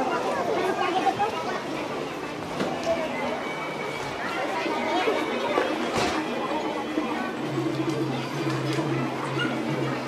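Street chatter of passers-by on a busy pedestrian market street, several voices overlapping without clear words. A steady low hum joins in about seven and a half seconds in.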